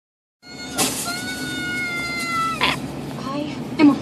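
A young woman's voice wailing in one long high cry, about a second and a half, that sags slightly in pitch. Short choked, sobbing voice sounds follow near the end.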